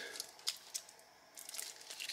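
Faint packaging handling: soft scrapes and rustles of a foam insert and cardboard box as a watch is lifted out, with a few small clicks and a quiet moment in the middle.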